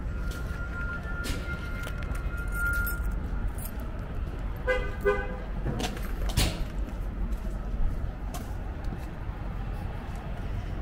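Steady low rumble of vehicle engines, with a thin high whine during the first three seconds and a brief horn toot about five seconds in.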